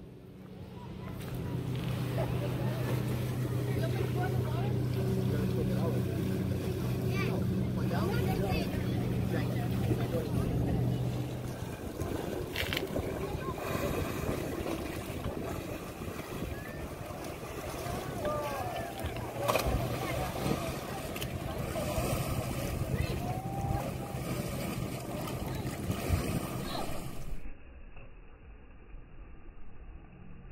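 Outdoor lake ambience: a motorboat engine drones steadily through the first ten seconds or so, then fades to a fainter hum. Wind noise and distant, indistinct voices and shouts of people come and go.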